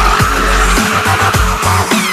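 Tyres of a drifting BMW E36 squealing and skidding on concrete, mixed with electronic dance music that has a heavy steady beat.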